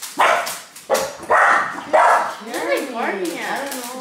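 Dog barking, several sharp barks in quick succession in the first two seconds.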